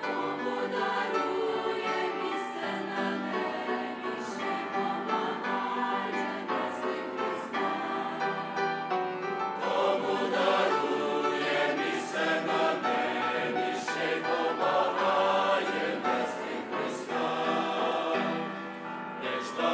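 A large mixed choir of women's and men's voices singing a hymn in Ukrainian, swelling a little louder about halfway through.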